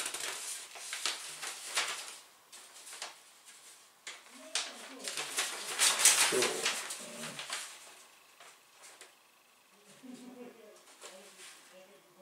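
A large folded paper leaflet rustling and crackling as it is handled and its pages turned, in uneven bursts, loudest about six seconds in.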